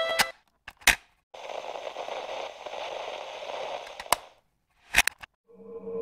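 Title-sequence sound effects: the intro music cuts off abruptly, then a few sharp cracks and about three seconds of crackling, static-like noise. Near the end a steady, dark ambient drone fades in.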